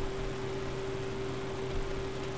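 A steady hum with a constant low hiss beneath it, unchanging throughout, with no distinct strokes or knocks.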